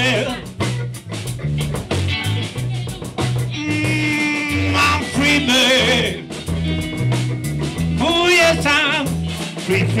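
Live blues band playing: electric guitars, bass guitar and drum kit, with a steady bass line and long held notes that waver in vibrato.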